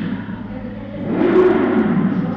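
A motor engine revving up and back down, rising and then falling in pitch about a second in, over a steady low hum.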